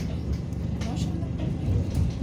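Steady low running hum of a moving EKr1 Intercity+ electric train heard from inside the carriage, with voices talking in the background.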